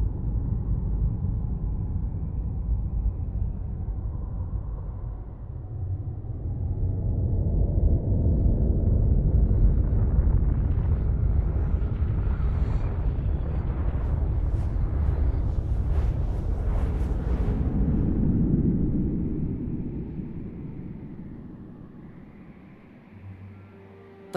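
A deep, steady low rumble, with a stretch of crackling in the middle, that fades away over the last few seconds.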